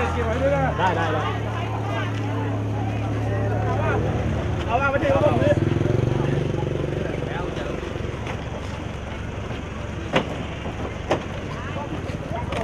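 A motor engine running at a low, steady pitch that steps up about a second in and rises briefly around six seconds, under people's voices; two sharp knocks near the end.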